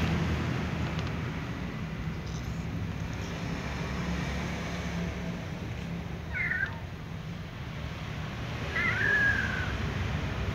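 A little cat meowing twice: a short meow about six seconds in, then a longer meow that falls in pitch near the end, over a steady low rumble.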